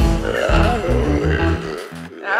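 Delta blues band playing, with gliding guitar lines over a deep bass line. The music thins out briefly near the end.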